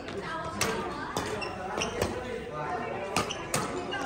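Badminton doubles rally in a large hall: sharp racket strikes on the shuttlecock, about five at uneven intervals, over the sound of voices talking in the background.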